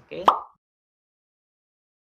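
A man says a short, rising "Okay?", then complete silence for the rest of the time.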